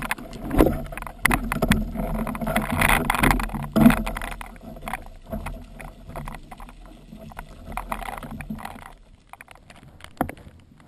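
Underwater, just after a speargun shot: the spear shaft and shooting line rattling and scraping in a dense run of sharp clicks and knocks as a speared fish is hauled in, loudest in the first four seconds and then trailing off.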